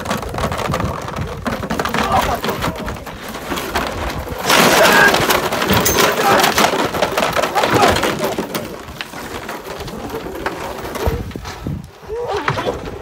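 Plastic caution tape crinkling and rustling as it is shaken and dragged over a dog, a dense crackle that is loudest from about four and a half seconds in until about eight.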